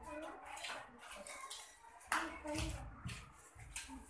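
Faint children's voices in a classroom, with a single sharp knock about two seconds in.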